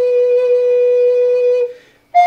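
Wooden Native American flute holding one long, steady low note that fades out near the end, leaving a brief breath pause before the next phrase.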